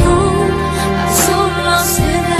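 Background music: a held, wavering melody note over a steady low accompaniment.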